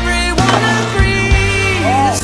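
A song with singing, over a skateboard hitting concrete a few times as a skater falls landing a flip trick down a stair set.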